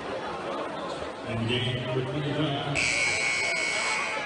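Basketball arena buzzer sounding one long, steady blare that starts near three seconds in, over crowd chatter.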